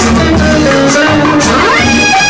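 Instrumental interlude of a 1960s Tamil film song: a band playing between sung verses, with a rising glide about one and a half seconds in.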